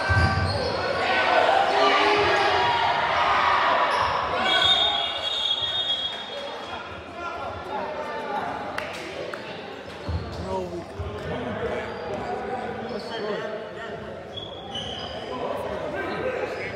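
Basketball bouncing on a hardwood gym floor during a game, with crowd and players calling out over it, echoing in the large gym. The voices are loudest in the first few seconds and thin out once play stops; the ball thumps again about ten seconds in.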